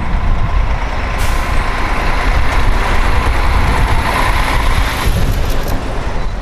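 Road traffic noise from a queue of cars and lorries with engines running, a heavy, uneven rumble throughout. A loud hiss comes in sharply about a second in and eases off near the end.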